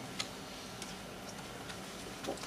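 Laptop keys clicking to advance presentation slides: one sharper click a moment in, then a few fainter ticks, over the steady low hum of the hall.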